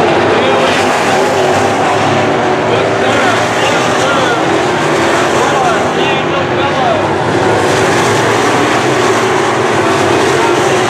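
Several dirt-track sport modified race cars running at speed. Their engines make a steady, loud drone, with pitch rising and falling as they rev through the turns.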